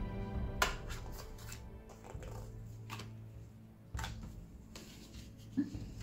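Soft background music, with a few clicks and taps of playing-card-sized Sakura cards being handled and turned over by hand; a sharp click about half a second in is the loudest.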